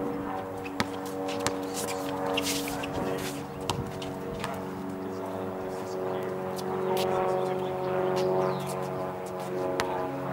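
Basketball play on an outdoor court: a couple of sharp smacks of the ball on the asphalt about a second in, with a few squeaks and scuffs of shoes, over a steady hum of sustained tones.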